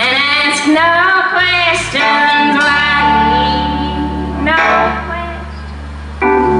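Live band music with a woman singing lead over sustained keyboard and bass notes, her sung phrases sliding in pitch. The voice drops out briefly near the end while the band holds its chord.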